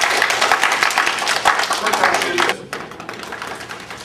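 A roomful of people, mostly children, clapping their hands together, stopping abruptly about two and a half seconds in.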